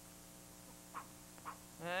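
Faint steady electrical hum, with two short faint noises about a second and a second and a half in; a man calls out "Hey" at the very end.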